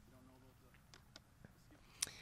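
Near silence: outdoor room tone, with faint distant voices near the start and a few faint clicks.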